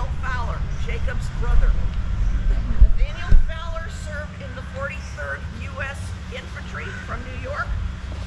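Indistinct talking from a distant voice, too faint to make out, over a steady low rumble, with a few louder low thumps about halfway through.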